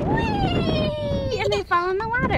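A young child's drawn-out, high-pitched vocal sound that falls steadily in pitch, followed by a shorter, lower, wavering sound near the end.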